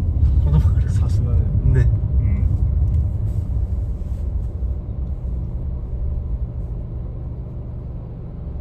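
Low road and engine rumble heard inside a car's cabin, growing quieter as the car slows behind traffic toward a stop.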